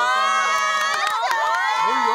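Several young women squealing and cheering together, high voices held and sliding over one another.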